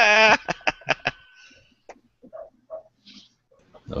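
A man laughing with a rapidly wavering pitch for about half a second, followed by a few short clicks and then faint, scattered sounds.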